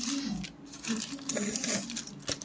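Plastic toy numbers and maths symbols being swept together by hand, scraping and clattering against each other and the board, over a low steady hum.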